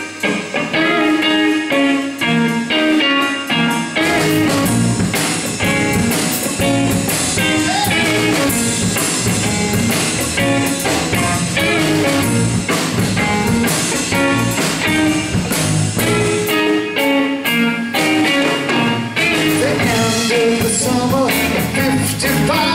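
Live blues-rock band playing an instrumental intro: electric guitar carries the first few seconds, then drums and the full band come in about four seconds in and play on together.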